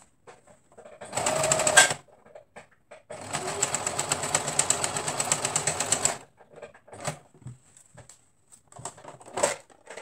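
Domestic electric sewing machine stitching a hem in two runs: a short burst about a second in, then a steady run of about three seconds of rapid needle strokes. Afterwards only a few light clicks and rustles from handling the fabric.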